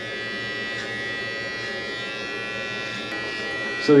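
Electric hair clippers running with a steady, even buzz while cutting hair on the side of the head, the blades fitted with a number three guard.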